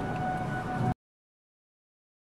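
Wind noise and rumble with a steady high-pitched tone over it, which cuts off abruptly to complete silence about a second in, as the sound drops out.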